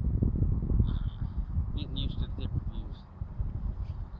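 Wind buffeting the microphone as a steady low rush, with a few short bird calls about a second in and again around two seconds.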